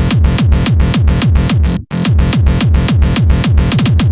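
Hardcore techno track driven by a fast, heavy kick drum on every beat, each kick falling in pitch. The music cuts out completely for an instant a little before halfway and comes straight back in.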